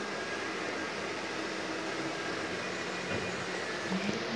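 Steady hiss with a faint low hum from running aquarium equipment.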